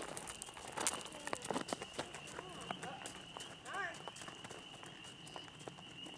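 A horse's hooves walking on a gravel path, irregular crunching clops that grow fainter as the horse moves away.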